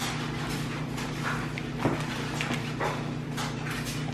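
Scattered small clicks and taps of a baby being spoon-fed cereal from a plastic bowl, the plastic spoon knocking against the bowl and the baby's mouth, with one slightly louder tap about two seconds in, over a steady low hum.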